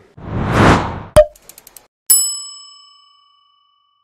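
Intro logo sound effect: a whoosh, a sharp click and a few soft ticks, then a bright bell-like ding about two seconds in that rings out and fades slowly.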